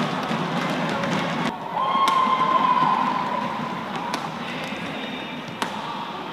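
Badminton rally: a few sharp racket strikes on the shuttlecock, spaced a second or more apart, over steady arena crowd noise. Crowd shouting and cheering swells louder about two seconds in.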